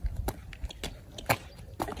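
Sneakers stepping and scuffing on a bare concrete slab during dance steps: about seven short, sharp taps, the loudest a little past halfway.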